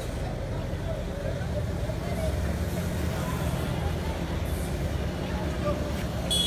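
Outdoor street ambience: a steady low rumble with faint, indistinct voices of people standing along the road.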